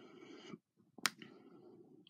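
A single sharp click about a second in, amid faint noise.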